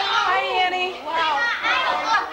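Several high-pitched voices talking and exclaiming over one another, with no clear words standing out.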